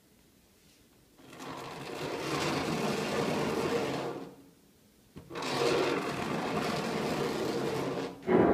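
A small electric motor whirring in two bursts of about three seconds each. The first starts about a second in; the second follows a pause of about a second.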